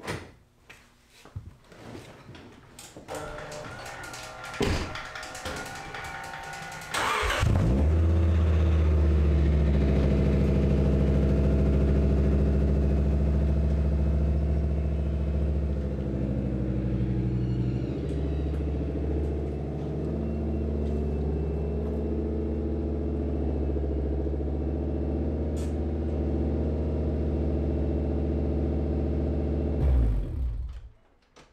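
A few clicks and knocks, then about seven seconds in the Acura Vigor's inline-five engine starts and settles into a steady idle while the car is backed slowly out of the garage.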